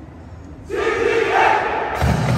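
Many voices shouting together in unison, starting suddenly a little under a second in and held for about a second, stepping up in pitch partway through: a group yell from marching band members just before they start to play.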